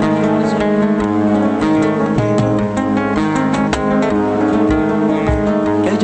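Two flamenco guitars playing together, with quick plucked notes and strums over sustained bass notes.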